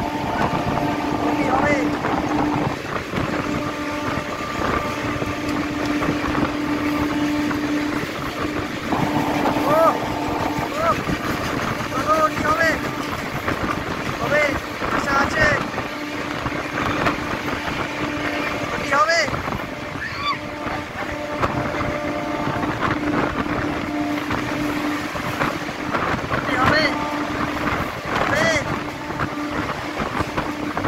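Running noise of an EMU local train at speed, heard from its open doorway: wheels on the rails and rushing wind, with a steady hum that fades out for a while and returns. Passengers' voices call out at times over it.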